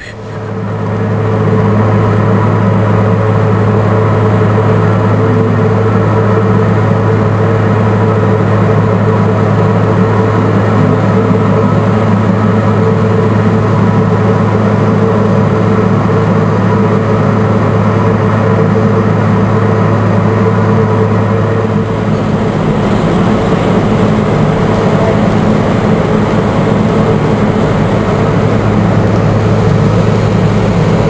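Loud, steady drone of heavy machinery with a deep hum, starting up at the beginning and building over about a second, then running on evenly, shifting slightly about two-thirds of the way through.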